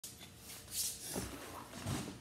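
Handling noise: a brief rustle, then two soft thumps as a cardboard box is picked up and stood upright on a wooden floor.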